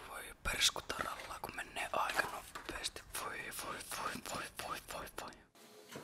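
Whispered speech, a breathy muttering, which gives way to quiet room tone about five and a half seconds in.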